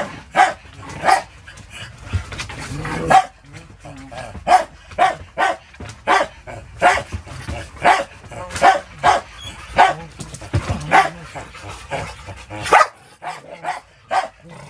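Dogs barking in rough play, a run of short sharp barks coming about one to two a second.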